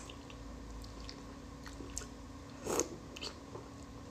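Close-miked mouth sounds of a person chewing soft plaice flesh: quiet wet clicks scattered through, with one louder smack about three-quarters of the way through.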